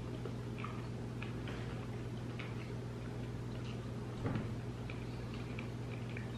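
Faint, irregular small clicks of people chewing pieces of hollow white chocolate with sprinkles, over a steady low hum.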